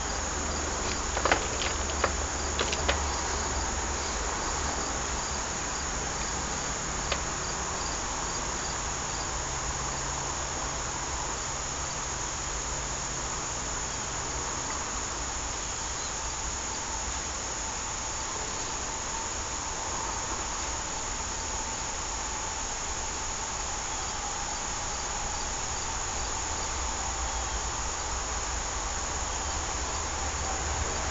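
A steady high-pitched insect trill, as of crickets, runs throughout. A few light clicks come in the first three seconds and once more at about seven seconds, from small pump seals and parts being handled.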